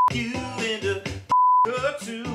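Two short steady 1 kHz censor bleeps, each blanking out the rest of the sound, mask the sung swear word. The first ends just after the start and the second comes about a second and a third in. Between them is Omnichord accompaniment with a man singing.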